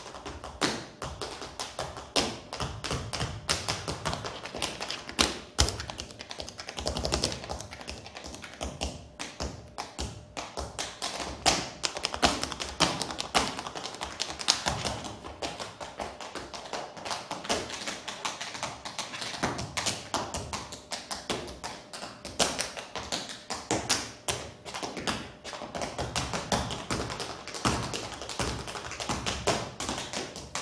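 Tap shoes striking a wooden stage floor in a fast, dense stream of sharp taps, with a few heavier stomps among them.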